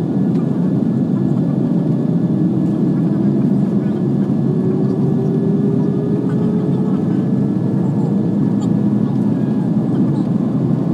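Cabin noise of a Boeing 787-9 jet airliner gathering speed on the ground: a steady roar with a faint whine that rises slowly in pitch as the engines spool up.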